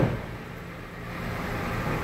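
The tail of a heavy thud as the Honda CR-V's door is shut, right at the start, then a steady low hum.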